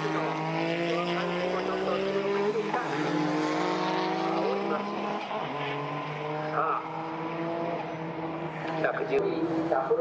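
Suzuki Cappuccino time-attack car's small engine running hard on track, its note climbing in pitch and dropping back twice, as at upshifts while accelerating.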